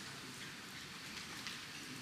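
Steady hiss of room tone in a large conference hall, with faint scattered rustles.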